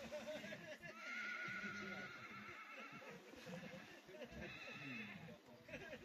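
Faint, distant horse whinnying: one long wavering call about a second in, then a shorter one near the end, over faint murmuring voices.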